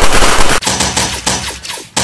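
Gunfire sound effects: a rapid, dense volley of shots that breaks up about half a second in into separate cracks a few tenths of a second apart.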